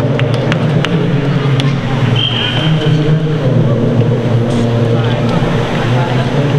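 Indistinct voices echoing in an indoor ice rink, with scattered sharp clicks and a brief high tone about two seconds in.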